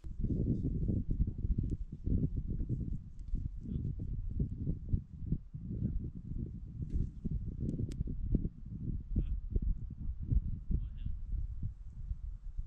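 Wind buffeting the microphone: an irregular, gusting low rumble that starts abruptly and keeps rising and falling throughout.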